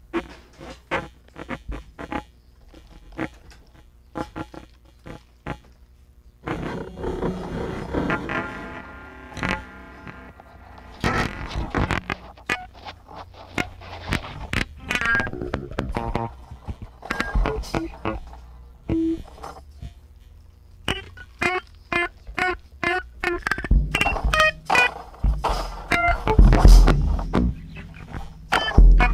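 A band playing live: irregular drum and percussion hits, joined about six seconds in by a thicker layer of pitched instrument notes, with heavy bass coming in near the end.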